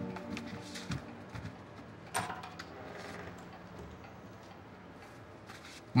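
Background music score of held chords fading out over the first second or so, leaving faint scattered clicks and one short, sharper sound about two seconds in.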